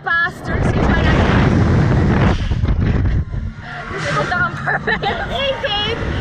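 Wind rushing over the microphone of the camera on a reverse-bungee ride capsule as it swings through the air, loudest for the first couple of seconds. The two riders then laugh and squeal.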